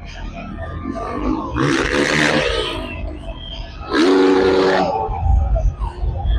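Dirt bike engine revving hard twice, each rev rising in pitch for about a second, during a freestyle motocross run.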